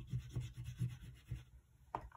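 Oil pastel rubbed across paper on a tabletop in several short strokes, a faint scrubbing with soft low knocks, about three a second. A sharper click comes near the end.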